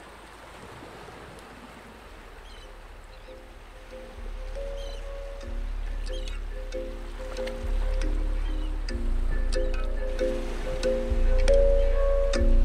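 Instrumental intro of a hip-hop beat. It opens on a soft, steady hiss, then about four seconds in a deep bass and repeating mid-pitched chords come in. The music builds steadily louder, with light, crisp percussion ticks joining near the end.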